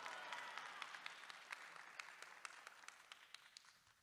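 Faint audience applause dying away, thinning into scattered individual hand claps.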